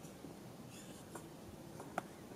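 Goat's milk squirting from a hand-squeezed teat into a plastic bottle, faint, with one short hissing squirt a little under a second in. A short sharp click comes near the end, the loudest sound.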